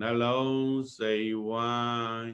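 A man's voice chanting a metta (loving-kindness) recitation in a slow, even monotone, each syllable drawn out, with a brief break about a second in.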